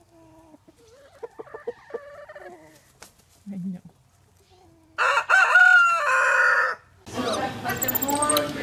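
Chickens clucking softly, then a loud rooster crow lasting under two seconds about five seconds in. Near the end, other sounds begin.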